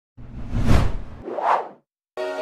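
Two whoosh sound effects for an animated logo intro: the first longer, with a deep rumble under it, the second shorter and higher, dying away before the end.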